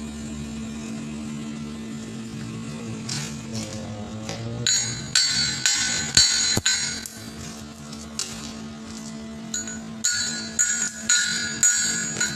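A steel pipe is struck repeatedly with a metal tool, and each blow rings out with a bell-like tone. The strikes come in two runs of quick blows, about three a second, the first starting about five seconds in and the second near the end. A steady electrical hum runs underneath.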